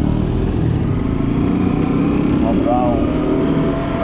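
Motorcycle engine running steadily while riding at low speed through town, with wind rumbling on the microphone.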